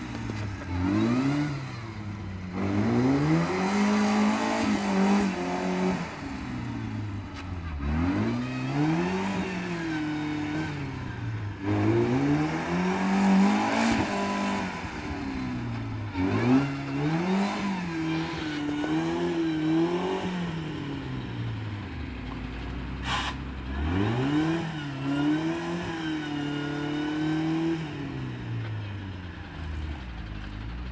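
Volvo Laplander (Valp) off-roader's engine revved hard again and again, its pitch rising and falling with each blip, as it works to push through deep mud. A little past two-thirds in it drops to idle for a couple of seconds, with one short sharp knock, then revs again.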